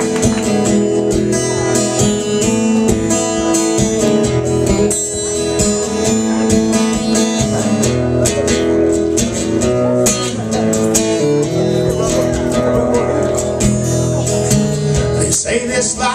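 A solo guitar strums chords in a steady rhythm, playing the opening of a song live. A voice starts to come in near the end.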